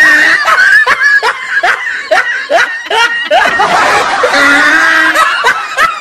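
A person laughing hard: a long run of quick, rhythmic laughs, about three a second, with a drawn-out high note near the end.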